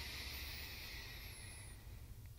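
Slow inhalation through the left nostril with the right held closed by the thumb, in alternate-nostril breathing: a faint, steady airy hiss that fades out near the end.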